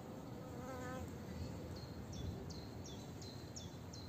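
A flying insect buzzing briefly with a wavering pitch near the start, then a small bird calling in a quick series of short, high chirps, over a steady low background noise.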